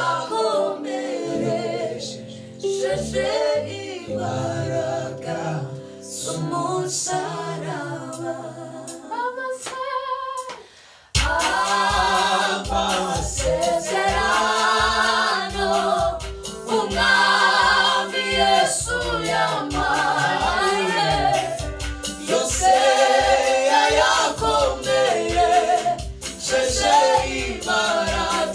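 A small group of young men and women singing a gospel song a cappella in close harmony into handheld microphones, over a low held bass line. About ten seconds in the sound drops almost away for a moment, then the singing comes back louder over a steady low beat.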